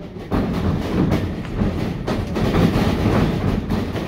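Sharp smacks of strikes landing between professional wrestlers, about one a second, over continuous noise from the live audience in the hall.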